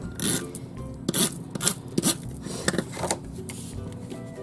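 Xyron tape runner drawn across paper cardstock in about six short strokes, laying adhesive on the back of a card mat.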